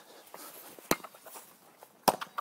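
A single sharp knock about a second in, with a few faint taps around it, from a hurley and sliotar being played along a tarmac yard.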